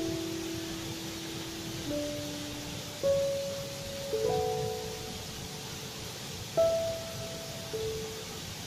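Slow, sparse relaxing piano music: single notes and pairs struck every second or two and left to ring out, over a steady soft hiss.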